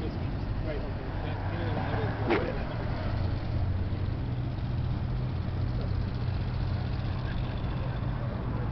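A car engine idling steadily with a low hum, with faint voices in the first couple of seconds and one short sharp sound about two seconds in.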